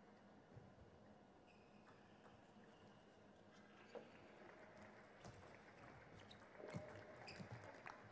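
Faint table tennis rally: the ball clicks off the bats and the table, starting about halfway through and coming every half-second or so.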